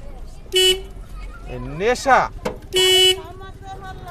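Two short toots of an e-rickshaw's electric horn, each one flat, unwavering note. The first is brief, about half a second in, and the second is a little longer, near three seconds. Under them is a low rumble of the ride.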